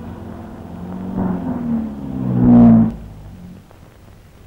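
A car engine as the car drives up and pulls to a stop. Its note swells and slides in pitch, is loudest shortly before three seconds, then cuts off sharply.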